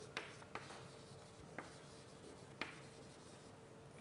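Faint writing on a board: about four short sharp taps spread over a few seconds, over a faint steady hum.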